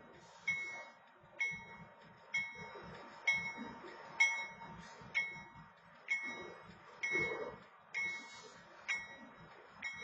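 Railroad grade-crossing warning bell ringing steadily, one clanging strike about every second, as the crossing signal is activated.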